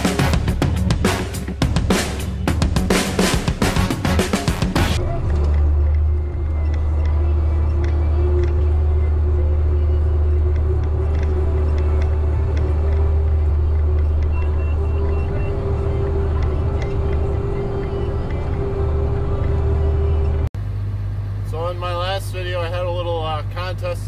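Background music with a drum beat for the first five seconds, then the steady low drone of a John Deere 7700 tractor's six-cylinder diesel engine heard from inside the cab. After a sudden cut near the end, a man talks over the engine's low hum.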